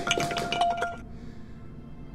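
Bright clinking with a held ringing tone, ending about a second in.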